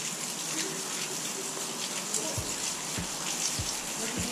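Steady hiss of falling rain on a station platform and its canopy. In the second half, soft footsteps about every half second come closer.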